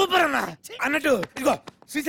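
Speech only: a man talking in short, rapid bursts of film dialogue.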